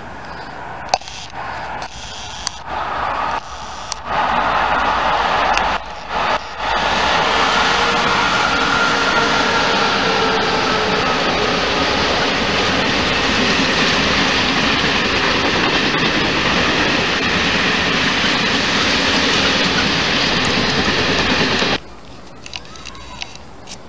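Freight train of flat wagons rolling past at speed: a loud steady rumble of wheels on rail that builds in the first few seconds, holds with a faint whine that drops slightly in pitch, and cuts off suddenly near the end.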